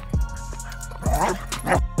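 An English Springer Spaniel gives one short bark about a second in, over steady background music.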